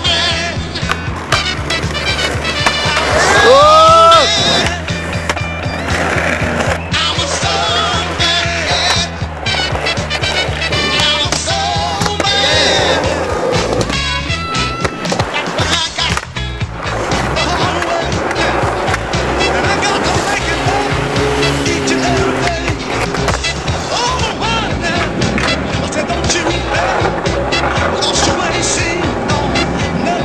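Music soundtrack over skateboard sounds: wheels rolling and sharp clacks of board pops and landings. A loud rising swoop about four seconds in, and the heavy bass drops out about thirteen seconds in.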